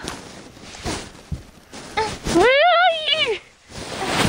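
Fabric rustling and camera handling inside a blanket fort, then about two seconds in a child's drawn-out wordless vocal sound lasting about a second, rising and then falling in pitch.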